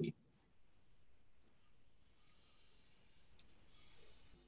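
Near silence over a video-call line, broken by two faint, sharp clicks about two seconds apart.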